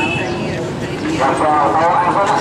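Voices talking over a steady background rumble of vehicle engines; a voice becomes louder and clearer about a second in.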